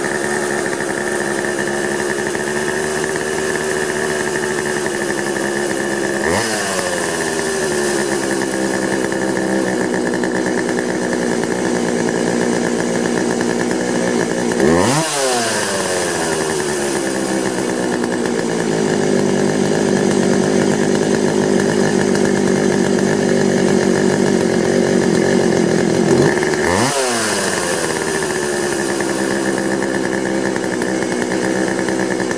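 Poulan 2150 two-stroke chainsaw engine running steadily while its carburetor mixture screws are being turned. The engine speed changes sharply three times, then settles back to a steady run each time.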